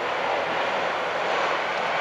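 Steady aircraft engine noise, an even rushing sound with no clear pitch that holds at one level.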